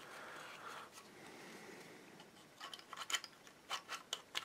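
Plastic casing and latch parts of an emptied 12 V Bosch drill battery pack being handled and fitted back together: faint rubbing for the first second or so, then a handful of light clicks near the end.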